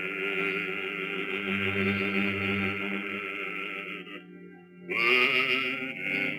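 Bass voice singing a long held note with vibrato over instrumental accompaniment; the voice breaks off a little after four seconds and a new phrase begins near the end.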